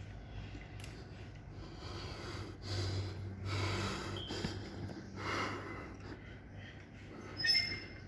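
A lifter's forceful breaths through the nose while bracing over a loaded barbell before a heavy deadlift: two loud breaths, about three and five seconds in, then a brief sharper sound near the end, over a low steady hum.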